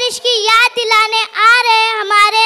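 A boy's voice over a microphone, announcing in a sing-song, drawn-out way, with one long held syllable in the second half.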